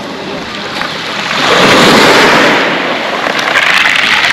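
Small Black Sea waves breaking and washing up over a pebble beach. The swash surges loudest about a second and a half in, draws back, and rises again near the end.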